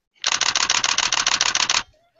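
DSLR shutter firing a continuous high-speed burst, about eleven shots a second for about a second and a half, then stopping.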